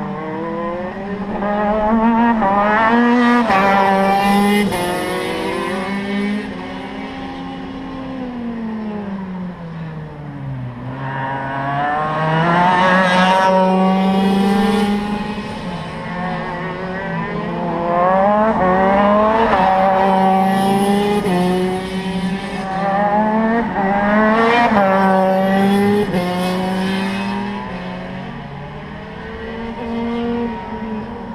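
KZ125 shifter kart's Modena two-stroke engine running hard, its pitch climbing steeply and falling back about four times, with sudden steps in pitch between the climbs.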